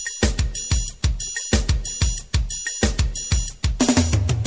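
Drum kit playing a steady beat on its own in a forró swingado recording, mostly bass drum and snare. Other instruments come back in right at the end with sliding notes.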